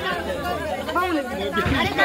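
A small crowd of people talking over one another, several overlapping voices.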